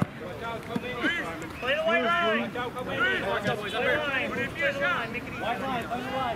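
Rugby players' voices shouting indistinct calls across an open playing field during a stoppage.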